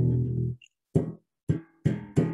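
Bass guitar strings plucked hard. A low note rings and is cut off about half a second in, then three sharp, separate plucks follow, each dying away quickly.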